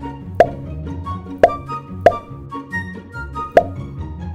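Four short, loud pop sound effects, unevenly spaced, laid over light background music with plucked notes; each pop marks a boop of the dog's nose.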